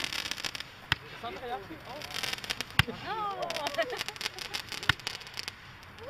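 Fireworks going off: three sharp cracks, about two seconds apart, with a spell of crackling around the middle.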